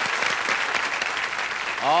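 Studio audience applauding, a steady wash of clapping.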